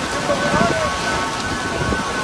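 Heavy rain pouring down, a steady hiss of drops striking the ground and umbrellas.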